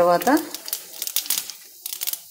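Split lentils and cumin seeds frying in a little hot oil in a nonstick pan, giving off scattered crackles and pops.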